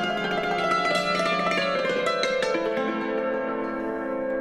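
Concert cimbalom played solo with two beaters: fast runs of struck, ringing strings, settling about halfway into a sustained tremolo on lower notes.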